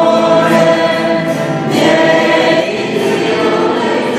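A congregation singing a hymn together, many voices on long held notes.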